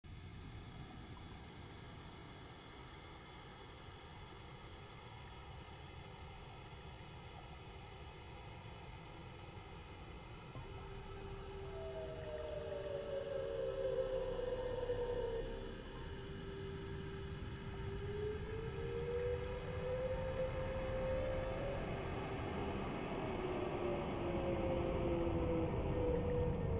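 Ambient electronic intro soundscape: a low rumbling drone with hiss, joined about eleven seconds in by slow sliding tones that swoop up and down, the whole growing steadily louder.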